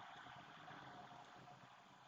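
Near silence: faint microphone hiss and room tone.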